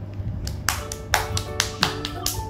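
A young child clapping her hands: a quick run of claps, about four a second, starting about half a second in, over background music.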